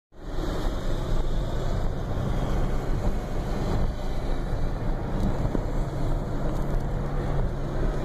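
Engine and road noise from inside the cabin of a moving car: a steady low hum under a rushing noise.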